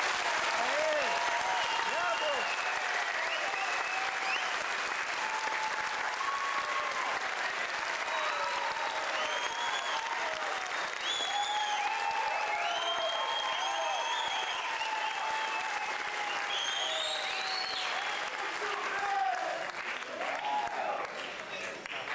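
Audience applauding steadily right after the music ends, with voices calling out over the clapping; the applause thins toward the end.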